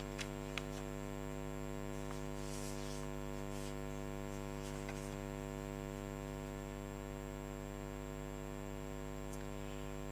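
Steady electrical mains hum, an unchanging buzz made of many even tones, with two faint clicks within the first second.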